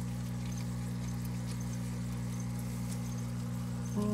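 A steady low electrical hum that holds the same level throughout, with no speech over it.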